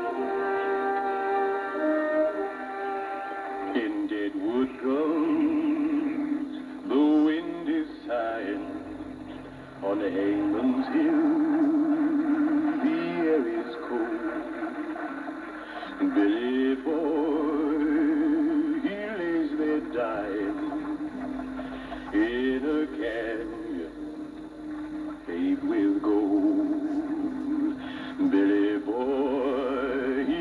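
Film soundtrack music: a held instrumental chord, then voices singing over it in long sweeping rises and falls of pitch through the rest.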